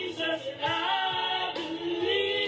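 A woman singing a gospel song in long, held notes, with a low beat underneath.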